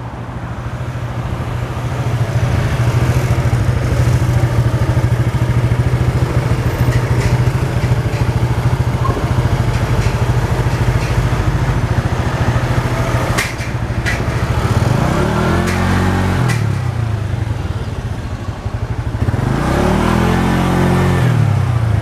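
Small motorbike engine running under way, with steady wind and road noise. The engine note rises and falls twice in the second half, about five seconds in from the three-quarter mark and again near the end.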